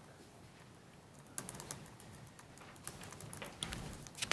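Faint, irregular clicking of typing on a laptop keyboard, starting about a second and a half in.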